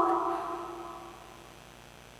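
The last held note of a melodic Quran recitation (tilawah) fading out over about a second, leaving a faint steady room hum.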